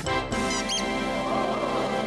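Background music with a few quick, high-pitched squeaks a little after half a second in, a cartoon bat squeak added for the bat-shaped squishy toy.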